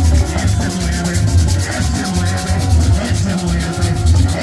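Live praise band playing a fast dance beat: a scraped percussion instrument ticks evenly about eight times a second over congas, bass notes and keyboard, with a man singing into a microphone.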